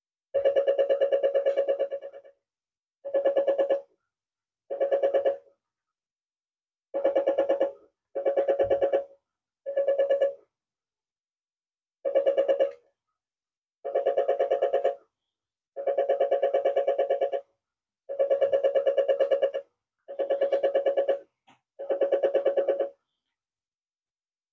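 A small speaker buzzes as a solar panel picks up a TV remote's infrared pulses, amplified by a homemade amplifier kit. There are twelve separate buzzy bursts, each about half a second to two seconds long, one for each button press.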